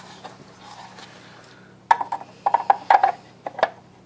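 Quick series of sharp plastic clicks and knocks as a Drill Doctor 500X drill bit sharpener and its chuck are handled and repositioned, starting about halfway through after a quiet start. A faint steady low hum sits underneath.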